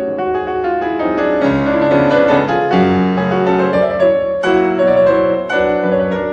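Piano music playing, with notes and chords struck one after another.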